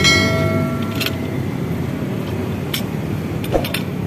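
Multi-lock handle of an aluminium casement window being worked by hand: a sharp metallic click with a short ring at the start, then a few lighter clicks, over a steady low background rumble.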